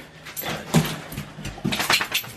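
Two pet dogs fussing around on a tile floor: a few short, sharp clicks and rustles, the loudest about three-quarters of a second in and another cluster near the end.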